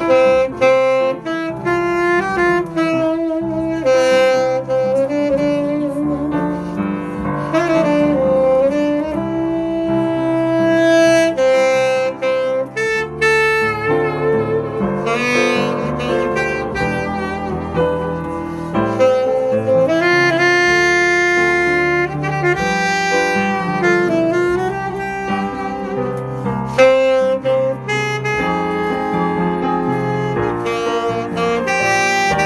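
Saxophone playing a jazz melody of held notes and quicker runs, over a lower chordal accompaniment.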